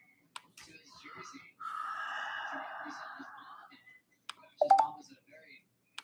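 A person's breathy, whispered voice lasting about two seconds, followed near the end by a brief voiced sound, with a few faint clicks in a small room.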